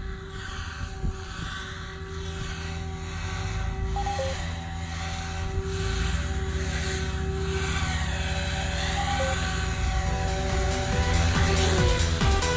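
Electric SAB Goblin 500 Sport RC helicopter flying low and coming in to land, its rotor and motor whine steady with small shifts in pitch, growing louder as it approaches. Electronic music comes in near the end.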